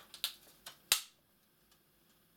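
Two faint clicks and then one sharp snap a little under a second in, from the bottom cover of an Asus Zenbook UX302 laptop as it is pried up by hand at the hinge edge.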